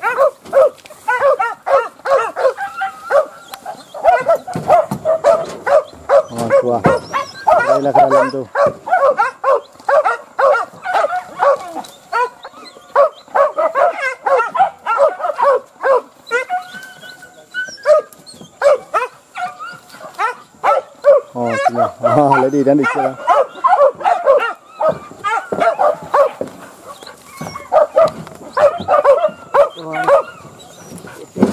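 A pack of hunting dogs barking and yelping almost without pause in quick, overlapping calls, the sound of dogs giving chase on wild boar. Two longer, lower calls stand out, one about seven seconds in and another after twenty seconds.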